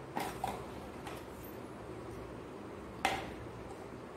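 Light clicks of a spoon against a small bowl as turmeric powder and water are stirred, a few faint taps at first and one sharper tap about three seconds in, over quiet room tone.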